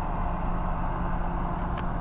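Steady low rumble with a faint, even hum, and a single faint tick near the end.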